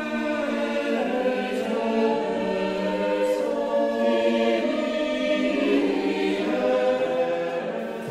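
A choir singing slow, long-held notes, the chords shifting gradually.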